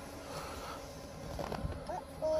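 A vehicle's engine runs quietly at low speed, heard from inside the cabin as a steady low rumble, with a faint brief sound about one and a half seconds in.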